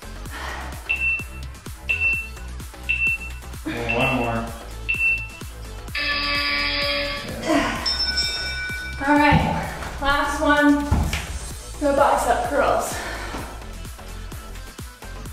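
Workout interval timer counting down: five short, high beeps about a second apart, then a longer, lower buzzer tone marking the end of the interval, over background music.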